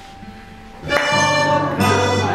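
A piano accordion and a plucked cello playing a duet: the music drops to a brief lull, then both come back in together about a second in, the accordion holding steady chords over low bass notes.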